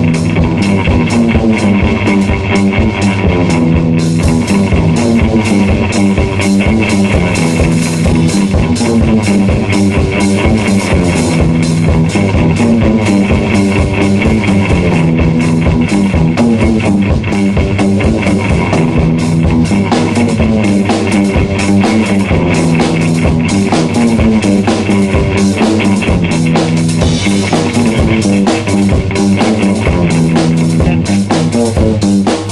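Rock band playing an instrumental stretch: electric guitar, improvised bass and a drum kit keeping a steady beat, loud throughout.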